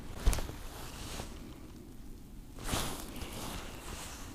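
Handling noise while the angler moves to the rod on the ice: a sharp knock a moment in, a fainter click, then a brief rustle and scuff of clothing and gear about two and a half seconds in.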